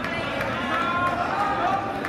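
Indistinct chatter of spectators in a gymnasium, several voices talking at once.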